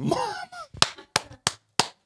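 A short voiced laughing exclamation, then four sharp hand claps about a third of a second apart: laughing applause for the punchline of a joke.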